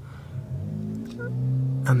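Car engine accelerating, heard from inside the cabin: a low hum that rises slowly in pitch and grows louder over about a second and a half.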